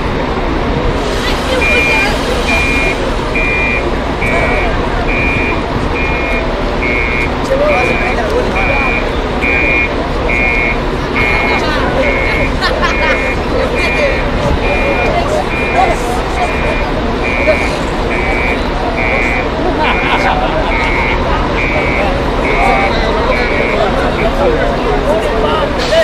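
A vehicle's reversing alarm beeping steadily, one short beep a little under a second apart, starting about two seconds in and stopping just before the end, over a background of voices.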